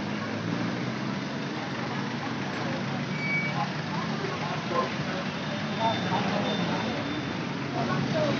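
Steady city street traffic noise from passing cars, vans and motorcycles, with indistinct voices in the background.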